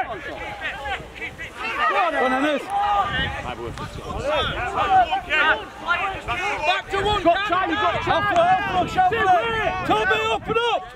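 Overlapping shouts and calls from boys playing a rugby league match and from adults on the touchline, with no single voice clear.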